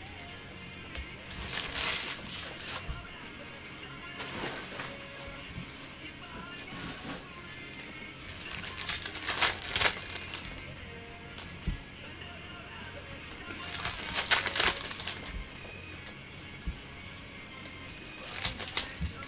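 Foil trading-card pack wrappers crinkling as packs are opened and handled, in three main bursts: about a second in, near the middle, and about three-quarters of the way through. Quiet background music plays underneath.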